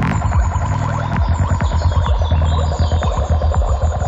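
Dark forest psytrance playing: a fast, driving bass pulse under dense, twittering synth layers. A sharp hit lands right at the start, and the pulse gives way to a held bass note for about a second before it picks up again.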